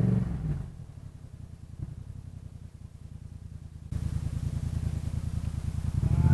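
Motorcycle engine dropping in revs as the throttle closes, then running low and quiet with a steady pulse. About four seconds in the sound jumps abruptly louder, with more engine and wind noise.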